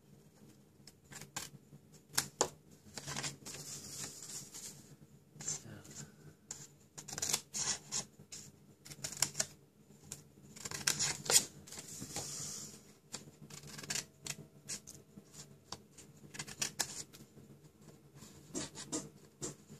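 Small scissors snipping through cardstock: a run of short crisp snips, irregularly spaced, cutting notches into the flaps of a box blank, with the rustle of the card sheet being turned and handled between cuts.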